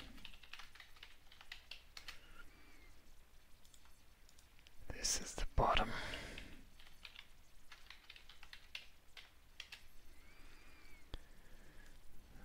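Typing on a computer keyboard: a run of light, separate keystrokes in short bursts, with a brief breathy vocal sound about five seconds in.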